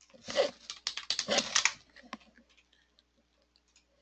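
Computer keyboard typing: a quick run of keystrokes over the first couple of seconds, then a few sparse clicks.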